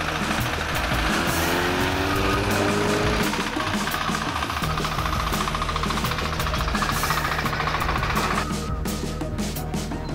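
Small single-cylinder motoblock (walk-behind tractor) engine chugging with a rapid knocking beat as it drives past pulling a trailer, alongside a passing car, with music underneath; the sound changes abruptly near the end.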